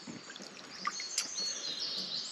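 Woodland birds singing: short high chirps and thin whistled notes, with faint lapping and dripping of hot-tub water.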